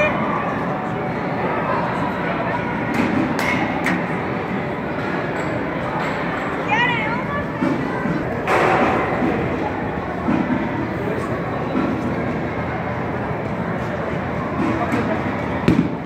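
Busy indoor batting cage: a steady din of background voices and noise, with a few sharp knocks of baseballs off bats and into the cage netting.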